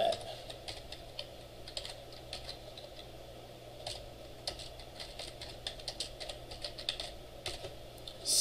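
Typing on a computer keyboard: a scattered run of faint, irregular key clicks as a short line of code is entered, coming in quick clusters, densest in the second half.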